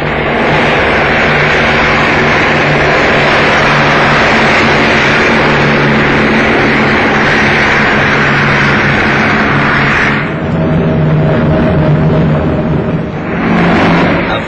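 The Short Shetland flying boat's four radial piston engines running at full power on the take-off run, a loud steady drone under a rushing hiss. About ten seconds in, the hiss thins and the low engine drone carries on alone, then the rush swells again near the end.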